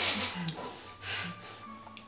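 A short breathy laugh at the start, then a softer breath about a second in, over faint background music.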